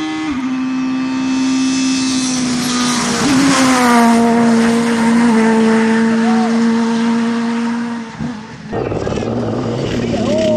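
Rally car engine running hard at high revs, its steady note stepping down in pitch a few times as the car passes. The hiss of tyre spray off the wet road rises with it. The sound breaks off briefly just after eight seconds and another rally car's engine follows.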